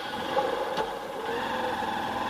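Motorcycle engine idling steadily.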